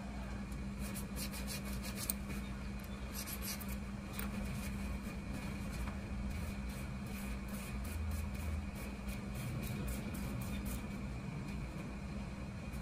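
Faint scratching and rubbing as a small brush and a metal pick work over an old pocketknife, with a few light ticks, over a steady low hum.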